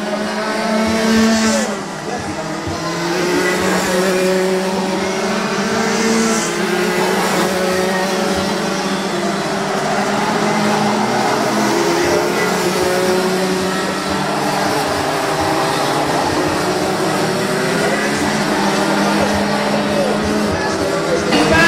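Racing karts' 125 cc single-cylinder two-stroke engines running on track, their pitch rising and falling as they brake and accelerate through the corners.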